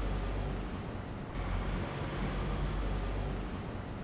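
Steady low rumble of road-vehicle noise, with a slight shift in its higher hiss just over a second in.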